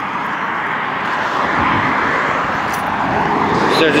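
Steady rushing noise of road traffic passing, swelling a little around the middle. A man's voice starts at the very end.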